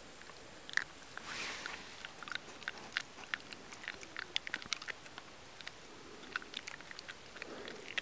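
Red fox chewing food taken from a hand: rapid, irregular crunching clicks of its jaws close to the microphone, with a brief rustle about a second in.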